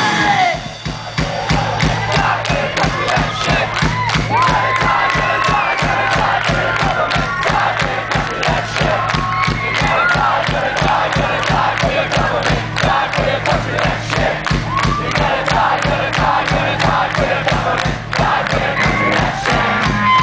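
Punk rock band playing live, with fast, even drum hits and a steady bass line, while a large crowd shouts and chants along.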